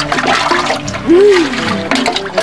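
Water running and splashing in a concrete laundry basin as clothes are washed by hand, over background music with held notes and a note that swoops up and back down about a second in.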